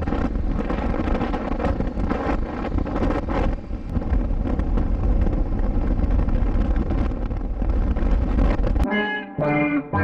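Wind rushing over a motorcycle rider's helmet-mounted microphone with engine and road noise at highway speed, buffeting in frequent gusts. About nine seconds in it cuts off abruptly and music with clear held notes begins.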